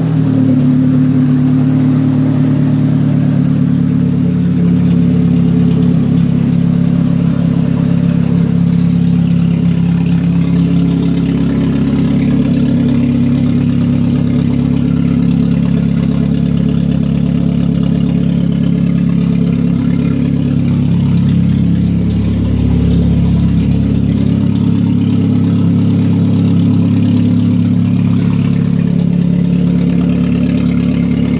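1990 Geo Prizm's 1.6-litre four-cylinder engine idling steadily, with a brief change in the engine note a little after twenty seconds in.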